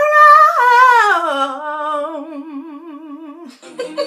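A woman's voice singing one long wordless note that slides down in pitch over the first second or so, then is held with a wide vibrato and stops about three and a half seconds in.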